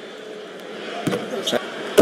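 Arena crowd murmuring during a free throw. About a second in, the made shot drops through and the basketball bounces on the hardwood court several times, with voices starting up.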